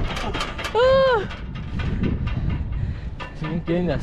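A person's voice calls out once with a short note that rises and falls, about a second in. Beneath it is a steady low rumble of wind on the microphone. A few sharp clicks come in the first half second, and voices start talking near the end.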